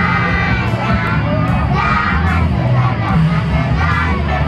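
A group of young children singing together loudly in unison, their voices near to shouting, with music playing underneath.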